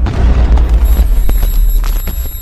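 Cinematic logo-sting sound effect: a loud, deep booming rumble, with thin high ringing tones coming in about a second in.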